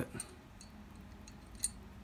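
Faint small clicks of metal parts being worked into an Archon Type B pistol slide by hand as the striker firing pin is straightened to drop into place; a few light ticks, the plainest about a second and a half in.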